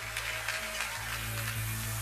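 Live Greek laïko band playing a quiet instrumental bar between sung lines: a steady bass note under light accompaniment.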